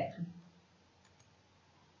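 The end of a woman's spoken word, then near silence with a faint hiss and a couple of very faint clicks.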